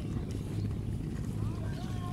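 Steady low rumble on the microphone, with faint distant voices calling from about one and a half seconds in.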